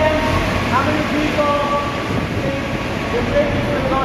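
A Kubota RTV utility vehicle's engine running steadily as the vehicle creeps forward, with people's voices talking over it.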